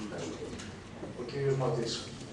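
A man's voice holding one drawn-out low 'o' sound, a hesitation, for about half a second near the end.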